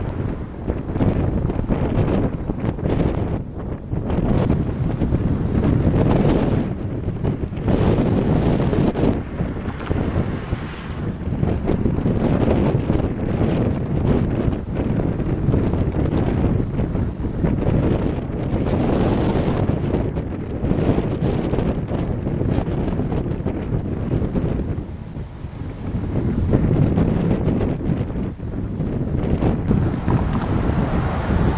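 Wind buffeting the microphone, a loud low rumble that rises and falls in gusts, easing briefly near the end.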